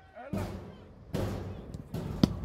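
Open-air football-ground noise, a low rushing noise that swells up about a third of a second in and again just after a second, with a faint short thud near the end as the ball is struck at goal.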